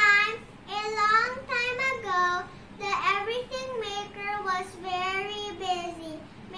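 A young girl singing a melody in several phrases, with long held and gliding notes and short pauses between them.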